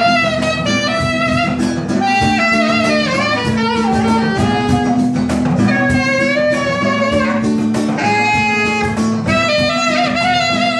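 Live band music: a saxophone plays a wandering melodic line over acoustic guitar and a steady percussion beat.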